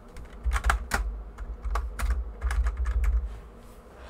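Typing on a computer keyboard: about a dozen irregular key clicks, each with a dull low thump, a reply comment being typed.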